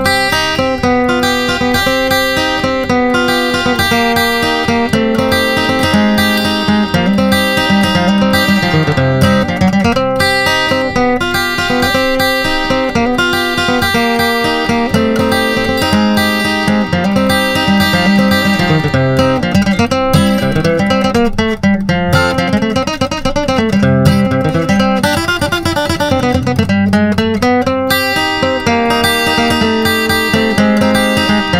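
Steel-string acoustic dreadnought guitar playing a bluegrass instrumental at a brisk pace: a steady stream of quickly picked melody notes mixed with bass notes and strums.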